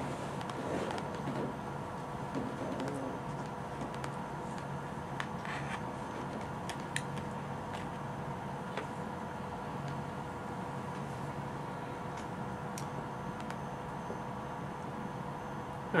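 Steady room tone with a low hum, broken by a few faint sharp clicks and, in the first few seconds, soft indistinct murmuring.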